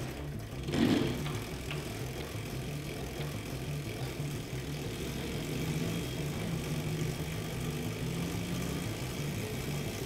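Electric Crazy Cart go-kart driving under its own steering, its electric drive and steering motors giving a steady low hum whose pitch shifts in small steps.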